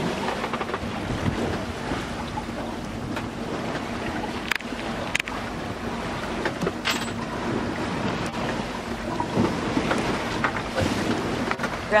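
Water rushing along the hull of a sailboat under way, with wind buffeting the microphone. A few sharp clicks are heard around the middle.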